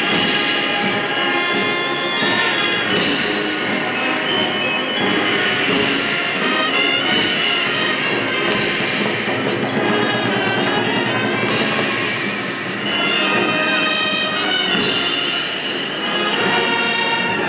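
A brass band plays held, sustained chords in a slow procession march, the kind of marcha fúnebre that accompanies Guatemalan Holy Week processions.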